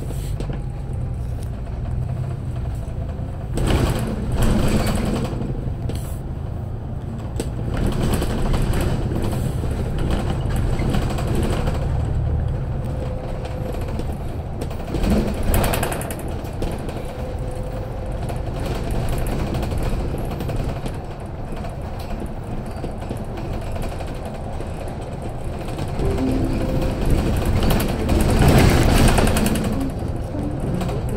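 Steady low engine and road rumble heard from inside a moving city bus, with a few louder jolts and rattles from the bodywork about 4 seconds in, around the middle and near the end.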